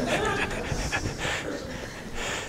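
A few people laughing in short, breathy chuckles that trail off.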